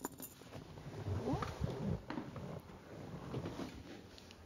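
Quiet handling noises of a person shifting across a vinyl car bench seat and climbing out: soft rustles, small knocks and light clinks, with a brief rising squeak about a second and a half in.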